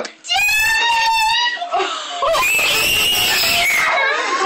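Family members screaming in excited surprise at a soldier's unannounced homecoming: a high held cry lasting about a second, a short laugh, then a longer, louder and higher-pitched shriek in the second half.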